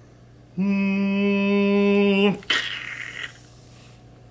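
A person's voice holding one steady sung note for about two seconds, followed by a short breathy hiss.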